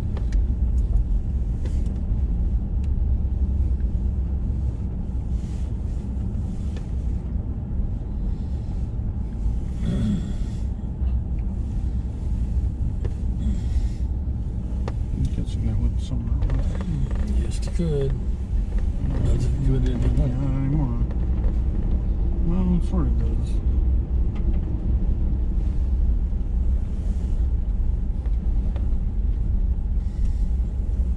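Steady low rumble of a vehicle driving slowly on a gravel road, heard from inside the cab.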